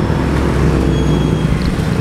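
Road traffic: a steady low rumble of vehicle engines going by on the road.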